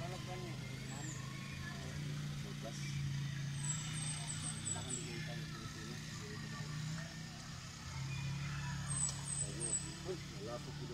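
Small ATV engine running as the quad bike is ridden slowly around a grass track, a steady low drone that swells and eases with the throttle.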